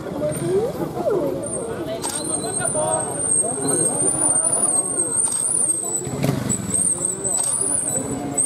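Trials motorcycle engine running low and being blipped as the rider picks his way through the section, under the chatter of spectators. A few sharp clicks, typical of a stills-camera shutter, cut through.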